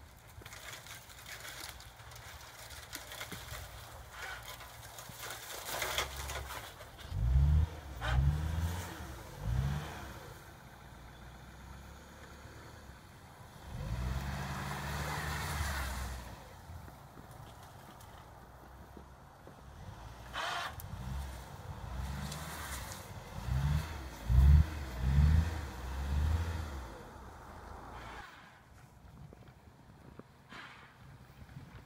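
The four-cylinder engine of a 2000 Dodge Neon plow car revs repeatedly in short bursts as it pushes a homebuilt plow blade through wet, heavy snow. There are three revs about a quarter of the way in, a steadier pull in the middle, and a quicker run of revs in the last third.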